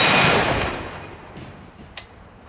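The report of a large scoped rifle's shot rolling away and dying out over about a second and a half, followed by a short sharp click near the end.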